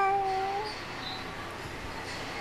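A baby giving one drawn-out, level vocal 'aah' coo, high-pitched and lasting under a second at the very start, then quiet.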